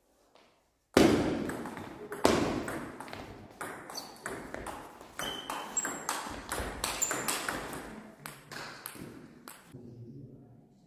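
Table tennis ball being hit back and forth in a fast rally, a quick string of sharp ball clicks off the rackets and the table. It starts with a loud hit about a second in and goes on until near the end.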